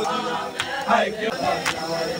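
Men's voices chanting a Punjabi noha, with sharp hand slaps on chests (matam) about once a second.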